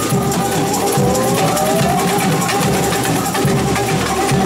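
Samba bateria playing live: massed drums and hand percussion keep up a driving samba rhythm, over steady held tones. A rising pitched glide sounds from about half a second to two seconds in.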